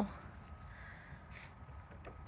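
Quiet outdoor background with one faint, short bird call about one and a half seconds in.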